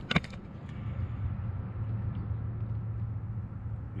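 A steady low mechanical hum, with a single sharp click just after the start.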